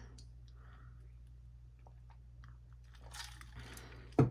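Very quiet room tone: a low steady hum with a few faint small ticks, and a soft rustle about three seconds in.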